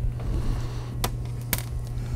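Two light clicks about half a second apart as small metal parts of a Seeburg jukebox mechanism are handled, over a steady low hum.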